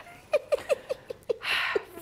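A woman giggling: a run of about eight short, squeaky laugh pulses over a second and a half, with a breath in the middle of them.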